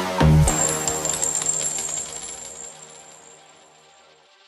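G-house electronic dance track breaking down: the pounding kick-drum beat stops after one last deep bass hit, leaving a high metallic shimmer and reverberant tail that fade away over about three seconds.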